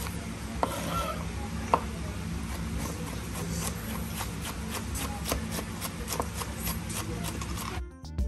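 Chef's knife chopping Scotch bonnet peppers on a wooden cutting board: quick, irregular knocks of the blade against the board, with music underneath. Just before the end it cuts to music alone.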